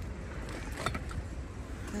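Steady low outdoor rumble in a car park, with a few faint handling sounds as groceries are moved about in a shopping bag in a car boot.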